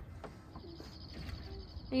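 Quiet outdoor ambience with faint distant bird calls.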